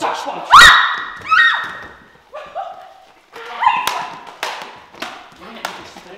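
A physical scuffle between two people: a loud thud with a rising yell about half a second in, a second shorter rising cry, then several thumps and grunts as bodies hit and struggle on the floor.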